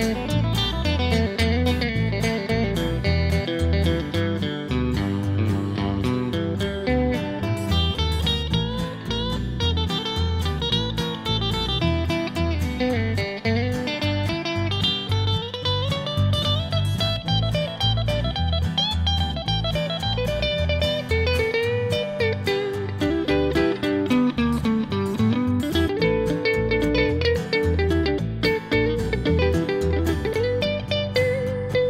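Instrumental break of a country-folk band: an electric guitar solos with notes that bend and slide up and down, over a steady bass line and acoustic guitar.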